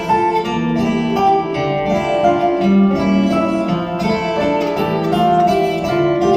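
Acoustic guitar and piano playing an instrumental passage of a song, with no singing.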